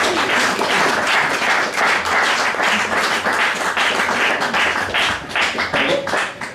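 Audience applauding at the end of a poem, a dense patter of clapping, with individual claps standing out more near the end.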